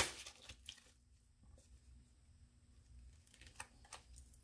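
Faint rustle and clicking of a deck of oracle cards being handled, trailing off within the first second, then quiet room tone with a couple of soft clicks near the end.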